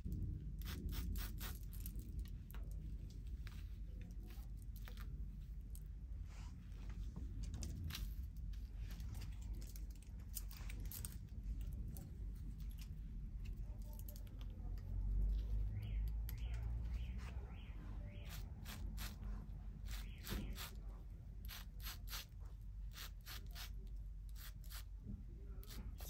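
Hair-cutting shears snipping through quickweave hair, in irregular runs of quick, crisp snips with short pauses between, over a low handling rumble.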